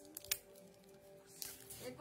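Plastic shrink-wrap on a hardcover book being pierced and torn open: a few sharp crackles about a third of a second in, more crinkling near the end, over faint background music.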